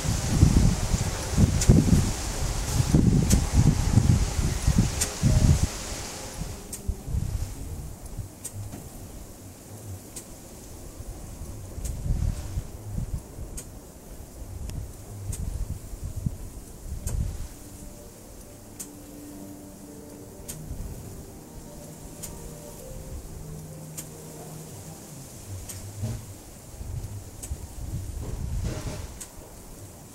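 Homemade model steam engine running slowly on compressed air, with faint, short ticks roughly once a second. Its exhaust is piped into a plastic bag that is filling and building back pressure. A louder rustling noise covers the first six seconds.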